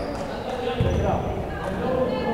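Indistinct voices of players and spectators in a gymnasium, with the thud of a volleyball being struck or bouncing on the hardwood floor a little under a second in.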